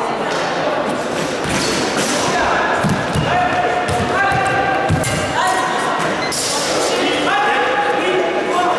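Rubber-soled shoes squeaking on a varnished wooden sports-hall floor as the fencers move in their footwork: many short squeals that rise and then hold. Dull footfall thuds come between about three and five seconds in, over voices in a large hall.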